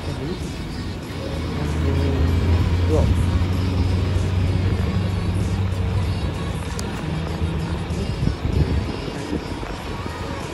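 Diesel city bus engine pulling away and driving close past, its low engine note building about a second and a half in and easing off in the second half.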